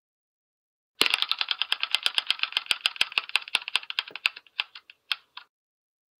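Ticking sound effect of an online spinning name-picker wheel: rapid clicks start about a second in, then space out and stop as the wheel slows to rest.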